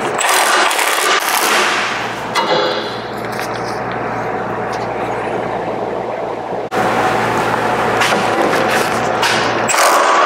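Milwaukee cordless impact wrench hammering on a 17 mm sway bar link nut in bursts, loudest in the first two seconds and again in the last three, with a quicker rattle between. The nut does not break loose: the tool is too small for it.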